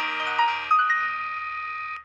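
Electronic keyboard voices from the ORG 2021 organ app holding a sustained chord. A new high note comes in under a second in and is held until everything cuts off suddenly at the end.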